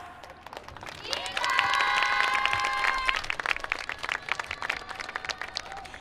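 Audience applause and clapping. About a second in, a rising electronic swoosh from the PA sound system leads into a held multi-note synth chord that cuts off about two seconds later, the start of the team's performance soundtrack.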